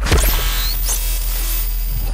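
Electronic music sting that starts abruptly: a dense, static-like glitch noise over a deep, steady bass, with quick rising sweeps in the high end about half a second in.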